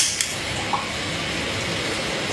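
A cigarette lighter clicks as it is struck to light a cigarette, then a steady hiss continues in a small tiled room.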